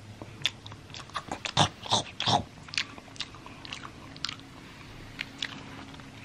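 Crisp food being bitten and chewed: a run of irregular crunches, loudest about one and a half to two and a half seconds in, then thinning out to occasional ones.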